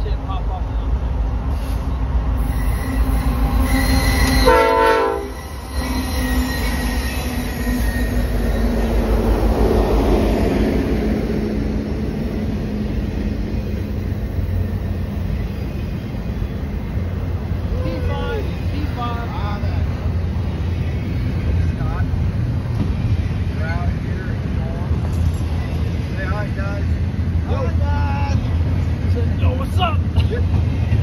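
Norfolk Southern double-stack intermodal freight train approaching and passing: the diesel locomotives' horn sounds a few seconds in, then its pitch falls as the locomotives go by. A steady rumble of the container well cars rolling over the rails follows, with occasional short wheel squeals.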